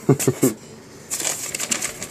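A man's short laugh, followed about a second in by a soft, even rustling noise.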